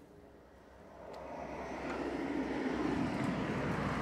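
A vehicle approaching, its rushing noise growing steadily louder from about a second in.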